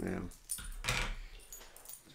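A small dog's collar tags jingling in a short burst of light metallic rattles as the dog moves on a lap.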